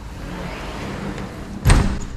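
Sliding patio door being slid along its track, then shutting with a loud thud near the end.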